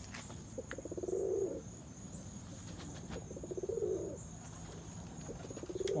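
Domestic pigeons cooing: three low, rolling coos, each about a second long, a little after the start, midway and near the end.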